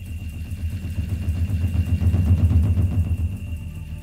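A deep, rough rumble that swells to its loudest a little past the middle and then eases off, with a faint steady high tone above it: a sound effect within the Wild West show's soundtrack.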